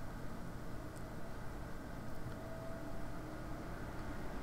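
Low, steady background noise: room tone with a faint hum and hiss, unchanging throughout.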